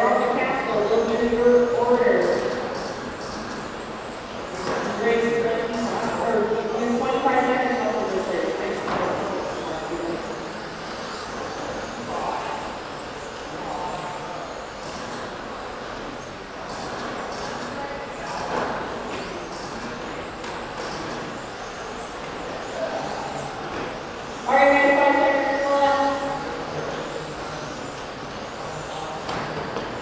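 Electric radio-controlled touring cars racing on an indoor carpet track: a faint, shifting whine from their motors under hall echo. Bursts of voices come in near the start, around five to eight seconds in, and loudest about 25 seconds in.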